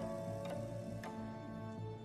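Background score music: sustained soft tones, with two light struck or plucked notes entering about half a second and a second in.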